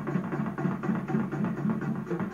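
Live rock band playing: a drum kit over a fast, even, repeated low riff.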